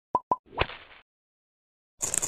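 Animated end-screen sound effects: two short pitched 'plop' pops in quick succession, then a brief swish about half a second in.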